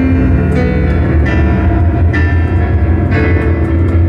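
Fast, loud piano music played on an electronic keyboard: full chords struck about once a second over a heavy, continuous bass.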